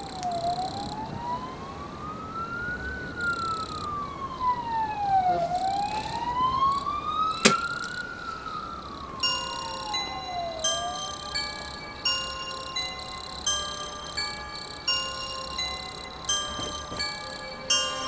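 An emergency-vehicle siren wails, rising and falling slowly about every five seconds, with one sharp click about halfway through. From about nine seconds in, a slow melody of high, chiming bell-like notes starts up as the siren fades.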